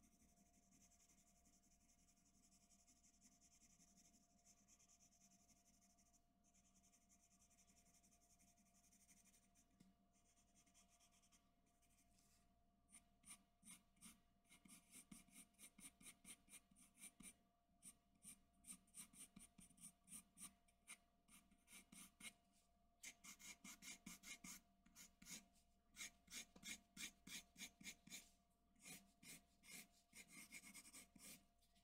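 Graphite pencil scratching faintly on drawing paper: a steady, even shading hiss at first, then, from about twelve seconds in, quick short hatching strokes, a few a second.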